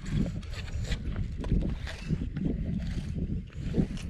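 A low, fluctuating rumble of wind on the microphone outdoors, with a few scattered soft clicks and rustles of handling.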